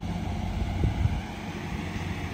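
Dodge Charger R/T's 5.7-litre HEMI V8 idling with a steady low hum.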